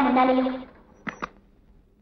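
A voice trails off, then a Hindustan Ambassador's car door is opened with two sharp clicks close together, a little over a second in.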